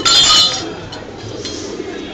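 A single bright metallic clink that rings for about half a second at the start, then fades.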